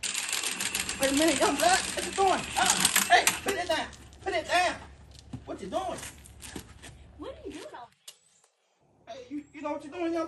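Cordless impact wrench hammering on a wheel's lug nut, a fast rattle for about the first three and a half seconds, with a voice over it.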